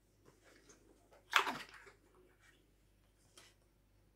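A man sniffing an opened drink carton: one short, sharp sniff about a second and a half in, among faint handling rustles of the carton.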